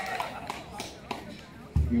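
The last scattered claps of applause dying away over people talking, then near the end a sudden low thump as a man speaks into the PA microphone.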